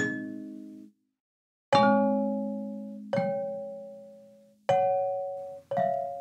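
Sampled glass marimba from Muletone Audio's Grand Glass Marimba library, played with blue sticks and picked up by overhead microphones. A ringing note dies away, and after a brief pause four more notes are struck about a second to a second and a half apart, each ringing out and slowly fading.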